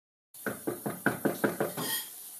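Rapid knocking on a hard surface: about seven quick, evenly spaced knocks, roughly five a second.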